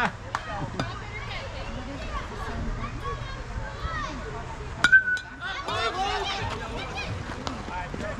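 A metal youth baseball bat hitting a pitched ball about five seconds in: one sharp ping with a brief ringing tone.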